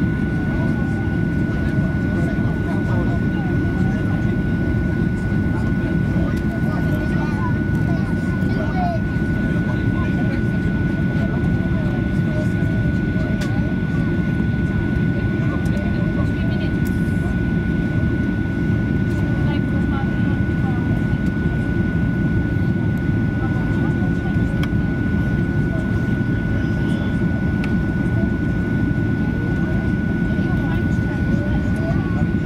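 Boeing 737-800 cabin noise during the descent: a steady, dense low rumble of engines and airflow with a constant thin high whine over it, unchanging throughout.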